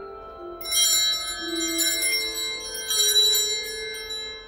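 Altar bell rung at the consecration of the host during Mass, calling the faithful's attention to the bread having become the Body of Christ. It is a bright, shimmering ring, struck repeatedly, that starts about half a second in and dies away near the end.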